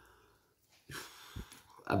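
A short breath drawn in during a pause in speech, with a small mouth click just after, before the woman's voice resumes near the end.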